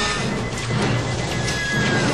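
Movie sound effects of an airliner cabin decompression: a loud, steady rushing-air roar with clattering debris, under dramatic film music.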